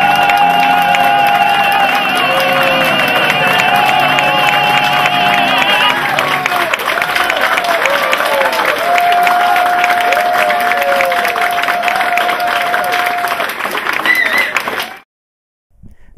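Male operatic tenor holding a final high note with vibrato over piano chords, ending about six seconds in. An audience then applauds and cheers, with long shouted calls over the clapping, until the sound cuts off suddenly near the end.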